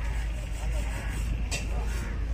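Steady low rumble of a motor vehicle engine running, with faint voices under it and a single sharp knock about three-quarters of the way through.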